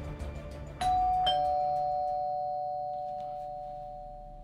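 Two-note ding-dong doorbell chime: a higher note strikes about a second in, followed by a lower one, both ringing on and slowly fading away.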